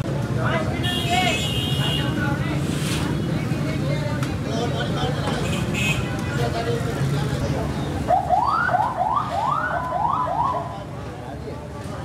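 Busy street-stall ambience with a steady low rumble and background voices; near the end an electronic alarm gives about six quick rising whoops in a row.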